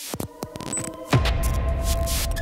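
Logo-sting sound effects: a few sharp glitchy clicks, then a loud hit about a second in that opens into a steady low rumbling drone with faint held tones over it.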